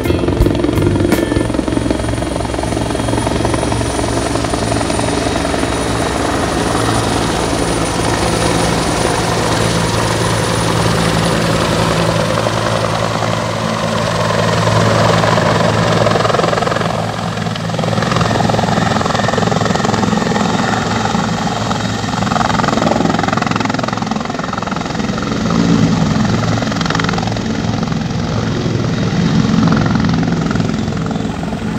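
Helicopter running close by: loud, steady rotor and engine noise that shifts in tone a little during the second half.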